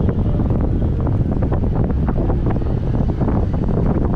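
Wind buffeting the microphone at a car's side window while driving, a loud, steady rumble with road noise underneath.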